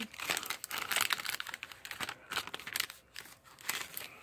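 Clear plastic sticker packaging crinkling and crackling in irregular bursts as sheets of stickers are pulled out of it and handled.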